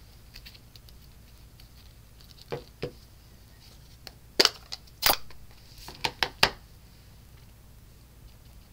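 Light knocks and clicks of craft supplies being handled on a work mat: a clear acrylic stamp block and an ink pad case are picked up and set down. The loudest knocks come about four and five seconds in, with a quick run of clicks about a second later.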